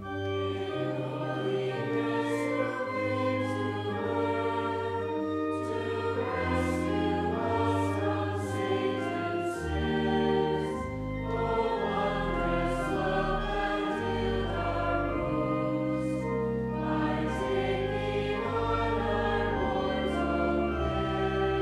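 Choir singing sustained chords with organ accompaniment and a deep bass line, beginning just after a brief pause.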